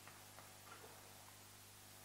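Near silence: faint light ticks of chalk writing on a chalkboard over a steady low hum.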